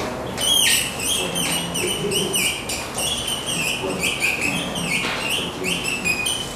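Dry-erase marker squeaking on a whiteboard as words are written: a quick run of short squeaky strokes, many sliding in pitch, starting about half a second in.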